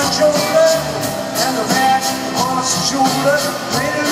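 Live rock music: a man sings the lead vocal over a full band, with a guitar and drums keeping a steady beat.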